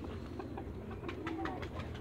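Muscovy ducks calling softly, a quick run of short, low calls starting about a second in, over a steady low hum.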